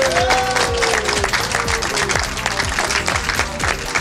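A group of people applauding, over background music with a steady beat.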